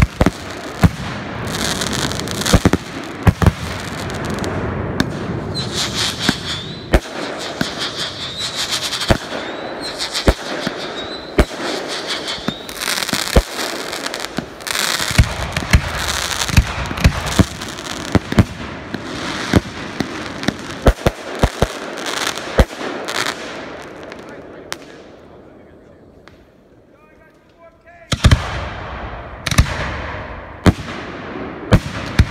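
Aerial firework shells bursting in rapid succession: sharp bangs over a continuous crackling hiss. The barrage dies down a few seconds before the end, then a fresh volley of bangs starts just before the end.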